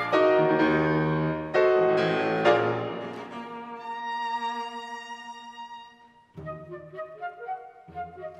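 Chamber ensemble of flute, clarinet, piano, violin and cello playing contemporary classical music: loud accented chords for the first three seconds, then a held chord that dies away. After a brief pause about six seconds in, quick short notes start up, with the flute on top.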